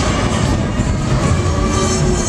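Loud fairground music mixed with the steady rumble and rattle of a Technical Park Loop Fighter thrill ride in motion.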